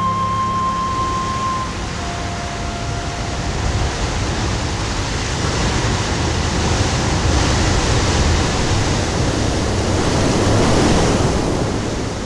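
Ocean surf breaking against rocks: a steady wash of crashing water that swells in the second half and eases near the end. In the first couple of seconds a held flute note from the soundtrack music fades out.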